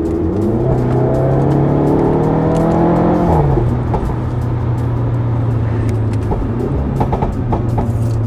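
The Giulietta Veloce S's 1750 TBi turbocharged four-cylinder engine, heard from inside the cabin, revs up under acceleration for about three seconds. Its pitch then drops sharply at an upshift, and it runs on at a steady lower pitch.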